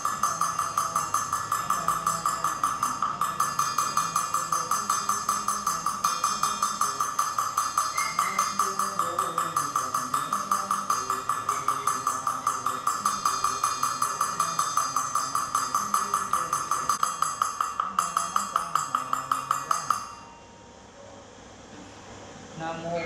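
A wooden fish (mõ) struck in a fast, even rhythm of about four or five knocks a second, under a low chanting voice; the knocking stops suddenly near the end.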